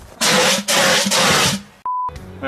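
A sudden flare-up of flame: three loud, rough rushing bursts of about half a second each, followed near the end by a short single-pitched bleep.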